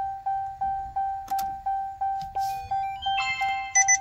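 Electronic chime dinging at one steady pitch, about three times a second, each ding fading quickly. A short run of higher-pitched beeps comes in near the end.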